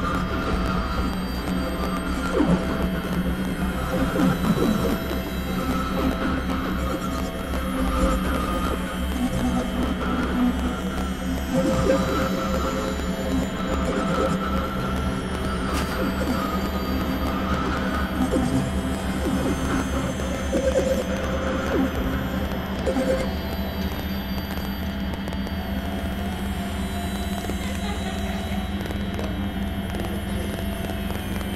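Experimental synthesizer drone music: a steady low drone under wavering mid-range tones, with high tones sweeping downward again and again every few seconds.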